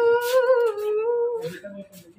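A woman humming a tune, holding one long wavering note that fades out about one and a half seconds in.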